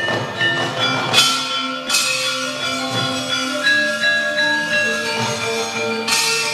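Javanese gamelan ensemble playing: bronze metallophones ringing long, overlapping notes at several pitches, with bright metallic clashing strokes over the first two seconds that then give way to sustained ringing tones.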